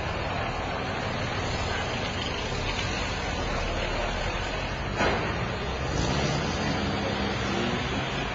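Steady street noise of cars driving past, with a sharp knock about five seconds in.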